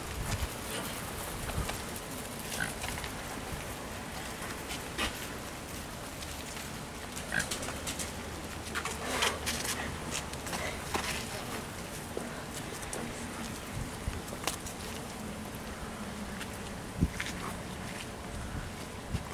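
Outdoor background by the water: a steady low hum of ambient noise with scattered light clicks and a few short, high bird chirps.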